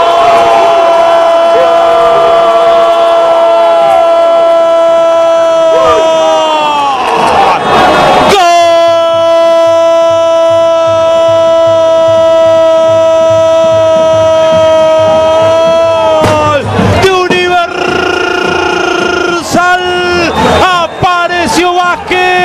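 A football commentator's long drawn-out goal cry, "Gooool", held on one pitch for about seven seconds and sliding down at the end, then taken up again after a breath for about eight more seconds, with a shorter third call before talk resumes. Crowd noise underneath.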